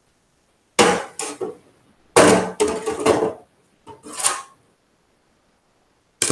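Handling noise from a large writing board being moved and swapped for the next page: knocks, clatter and rubbing in three bursts about a second apart.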